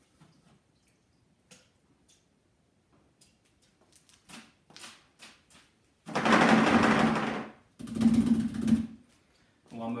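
An oil paintbrush being cleaned in thinner: a few light clicks and taps, then two loud bursts of rapid rattling as the brush is beaten to knock the thinner out. The first burst, about six seconds in, lasts under two seconds; the second is about a second long.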